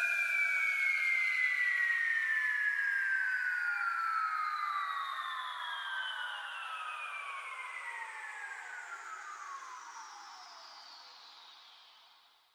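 The closing effect of an electronic track once the beat has stopped: a sustained, layered synth tone glides slowly down in pitch, like a long downward sweep, and fades out to nothing about eleven seconds in.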